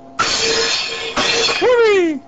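Edgerton's Boomer firing: the charged capacitor bank dumps into the coil with a sudden loud bang that throws the aluminum disc upward, followed by about a second of ringing, clattering noise. A second crash comes about a second in as the disc comes back down, and a falling 'whoo'-like tone closes the window.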